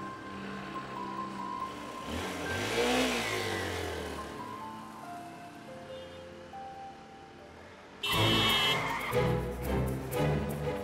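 A small motorcycle engine rises and then fades as the bike passes and rides away, over soft background music with long held notes. Near the end, loud dramatic music with strings comes in suddenly.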